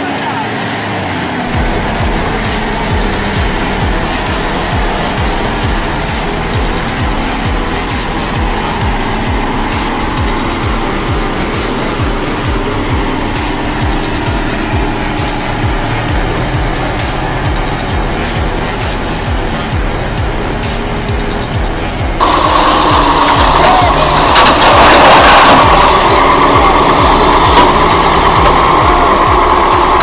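Vehicle engines running amid outdoor noise, with indistinct voices. About three-quarters of the way through it cuts abruptly to a louder, different recording.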